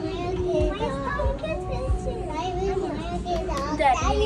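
Several children's voices chattering and exclaiming at once, overlapping so that no single words stand out.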